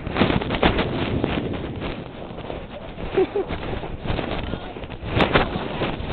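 Irregular rustling and scraping handling noise on a covered camera microphone, mixed with wind noise, with no steady tone.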